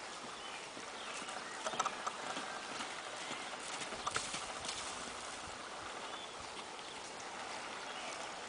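Horse's hoofbeats on a dirt arena as it canters under a rider, with a few sharper knocks about two and four seconds in.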